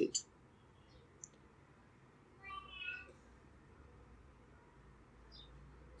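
Quiet room with a low steady hum; a single computer mouse click about a second in, and a short, faint pitched call in the background around the middle.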